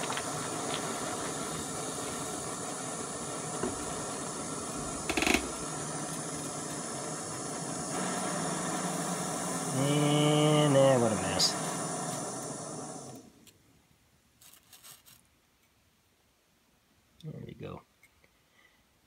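Gas canister stove burner hissing steadily under an Esbit stainless steel coffee maker as it brews, with steam leaking around a poorly tightened lid seal. About thirteen seconds in the stove is shut off and the hiss cuts off suddenly, leaving near silence.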